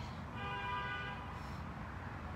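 A single steady pitched tone, like a distant horn, sounds for about a second over a low steady outdoor rumble.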